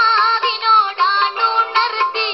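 A boy singing an ornamented Indian song melody with bending, wavering pitch over instrumental accompaniment, heard through a computer's small speakers: thin, with no bass.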